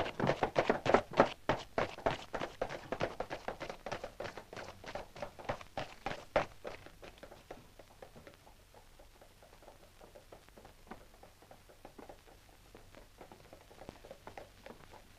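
A quick run of sharp taps, about four or five a second, loudest at first and dying away by about seven seconds in, then only a few faint ticks.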